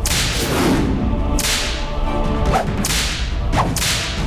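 A whip cracking with a swish four times, over dramatic background music.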